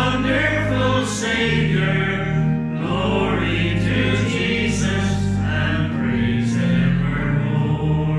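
A hymn sung by a group of voices in long, held notes over a steady low accompaniment.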